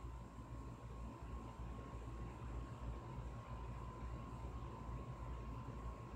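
Steady background hum and hiss of a room, a low rumble with a faint constant high tone running through it, and no distinct events.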